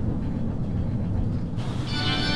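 Calico Mine Ride ore-car train rolling along its track: a steady low rumble. Just before the end, organ music starts up.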